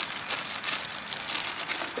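A plastic bag crinkling softly as it is handled.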